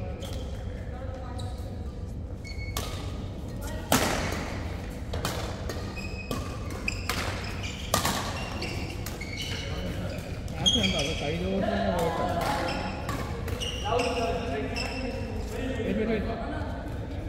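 Badminton rackets striking a shuttlecock in a rally, a series of sharp smacks that echo in a large hall, the loudest about 4 s and 8 s in.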